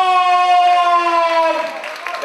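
A ring announcer's voice drawing out a fighter's name in one long, loud held call that slowly falls in pitch and fades near the end.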